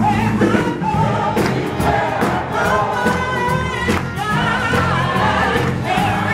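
A mixed choir singing a gospel song over keyboard accompaniment, with hand-clapping in time.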